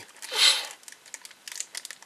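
A small clear plastic bag crinkling as it is turned over in the fingers. There is a louder rustle about half a second in, then quick faint crackles.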